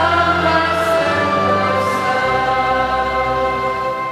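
Choir singing a psalm setting in long held notes over sustained low bass chords; the chord underneath changes about two seconds in.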